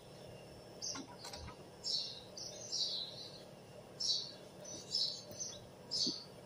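Birds chirping: short, high, repeated chirps coming every half second or so.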